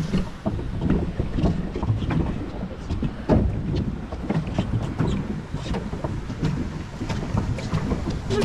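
Swan-shaped pedal boat under way: its paddle wheel churns the water while the pedal drive and plastic hull give off irregular clicks and knocks, one louder knock about three seconds in. Wind rumbles on the microphone.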